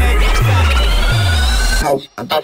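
Electro house dance music: a rising synth sweep climbs through the bar while the bass glides down in pitch twice. It cuts off abruptly near the end into a sparse break.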